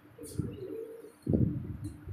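A pigeon cooing: a soft low coo about a quarter-second in, then a louder one starting just past halfway.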